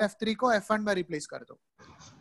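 A person speaking in short, broken phrases, with a brief pause about three-quarters of the way through.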